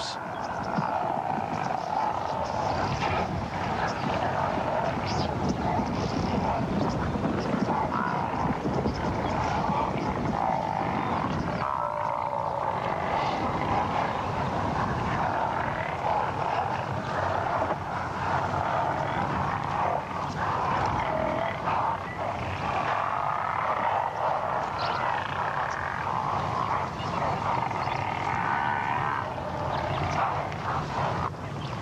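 Herd of African buffalo grunting and calling as it charges after lions, a dense unbroken din.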